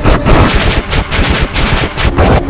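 Very loud, heavily distorted and clipped electronic audio: a dense, rapid rattling stutter with strong bass, the kind of effects-processed logo soundtrack made for these videos.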